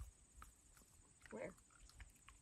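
Near silence: quiet ambience with a few faint ticks.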